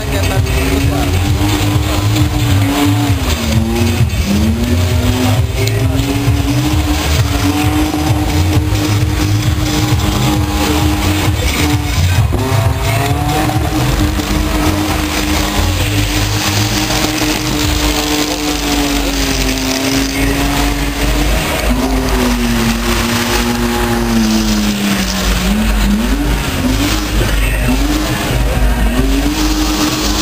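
BMW E30 doing a burnout: its engine held at high revs while the rear tyres spin and screech in smoke. The engine note stays steady for long stretches and dips briefly a few times, around three seconds in, near twenty-five seconds, and again near the end.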